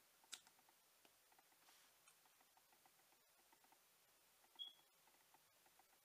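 Near silence: room tone, with one faint click about a third of a second in and a short high squeak about four and a half seconds in.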